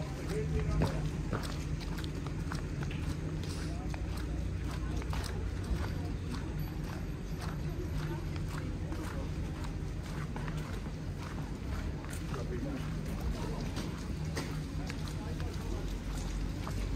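Footsteps on wet, slushy pavement, a steady run of soft knocks, over a low steady hum of street ambience. Indistinct voices of passers-by can be heard.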